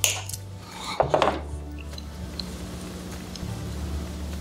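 Wire cutters snipping through a jewelry head pin wire, a sharp click at the start, followed by a light metallic clink about a second in, over a low steady hum.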